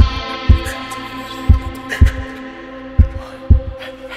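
Instrumental passage of a punk-and-roll band recording: a kick drum beats in pairs half a second apart, each pair repeating every second and a half, under a held, sustained chord.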